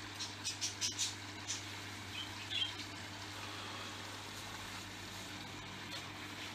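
Steady low hum of running aquarium equipment such as air pumps and filters, with a few faint high clicks and short squeaks in the first half.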